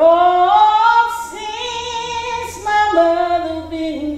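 A woman singing unaccompanied, holding long notes and sliding from one pitch to the next.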